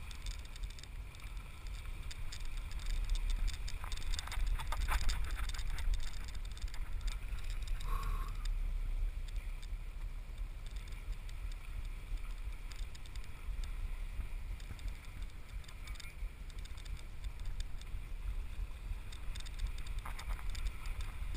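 Steady low rumble of a harpoon fishing boat's engine running at slow speed under way, with wind and water noise over it.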